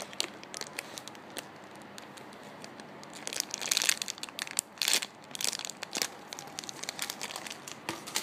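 Clear plastic bag crinkling as fingers squeeze a foam squishy toy through it, in irregular crackles that grow busier about halfway through.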